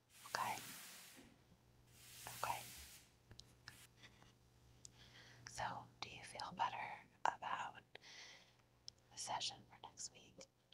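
A woman whispering softly and intermittently, with two brief hissing sweeps in the first three seconds.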